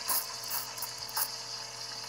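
Espresso machine's rotary pump running steadily with a low hum while a shot extracts.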